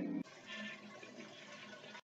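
Faint rushing water of a toilet flushing.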